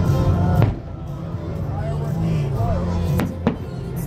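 Fireworks bursting overhead: one bang about half a second in and two more close together near the end, over music and people talking.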